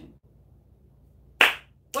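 A single sharp hand clap about one and a half seconds in, over quiet room tone.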